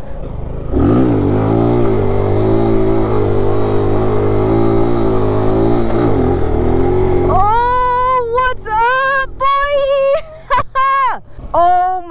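Mini motorcycle engine revved hard about a second in and held at high revs for about five seconds while the front wheel is up in a wheelie, then the throttle rolls off and the engine note falls away. Then the rider whoops and shouts excitedly in a high voice.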